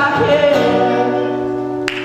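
Male voice singing with an acoustic guitar, closing on a long held note and chord that ring steadily, then stop with a sharp click near the end.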